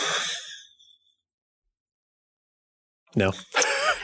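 A person's breathy exhale fading out within the first second, then dead silence for about two seconds before a voice comes back in.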